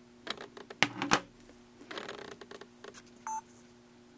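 A plastic TV remote being handled and set down on a wooden table: a few sharp clicks and knocks, the loudest two a little under a second in, then softer ticks. A short electronic beep sounds near the end.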